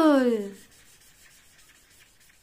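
A spoken word trails off with a falling pitch in the first half second. After it comes the faint rubbing of a marker tip colouring on paper, in quick repeated strokes.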